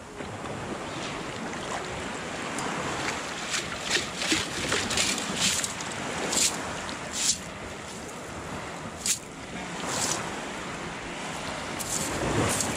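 Shallow seawater sloshing around a long-handled stainless steel sand scoop as it digs, is lifted full of shingle and shells and is shaken to sift. Over a steady watery wash come about ten short, sharp splashes and rattles at irregular intervals from about three seconds in.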